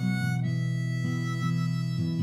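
Harmonica playing sustained chords over a strummed acoustic guitar, the strums falling about twice a second.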